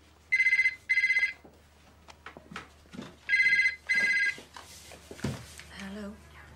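Landline telephone ringing with the British double ring: two trilling double rings, about three seconds apart. A low thump comes near the end.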